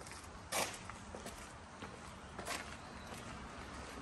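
Footsteps on a paved path: a few soft steps at walking pace, the loudest about half a second in, over faint outdoor background noise.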